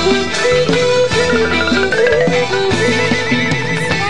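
Instrumental passage of a Khmer traditional ensemble: khim hammered dulcimer struck with light hammers, with bamboo flute and roneat xylophone, a quick warbling high ornament in the second half.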